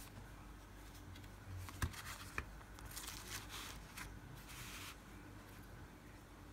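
Faint handling sounds as a metal nail-stamping plate is set down and shifted on a paper towel: two light clicks about two seconds in, then a few short bursts of rustling.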